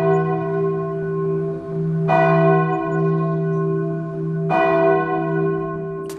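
Church bell tolling slowly, struck about every two and a half seconds, each stroke left to ring on with a low hum beneath.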